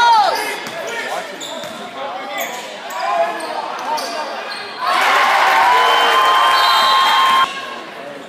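Basketball game sounds in a gym: the ball bouncing, sneakers squeaking on the hardwood and crowd voices. About five seconds in the crowd noise gets much louder, with a held tone in it, then cuts off sharply near the end.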